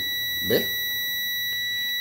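Digital multimeter in continuity mode giving a steady, high-pitched beep while its probes touch two points on the TV's circuit board. The beep means the path conducts: the connection from the flyback's filament winding is apparently intact up to this point.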